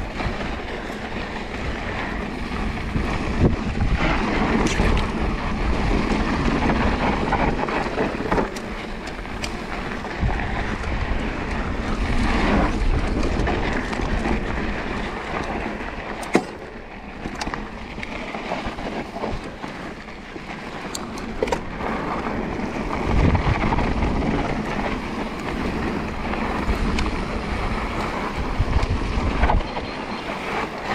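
Mountain bike descending a dirt and rock singletrack at speed: knobby tyres rolling over the ground and the bike rattling over bumps. There is one sharp knock about 16 seconds in.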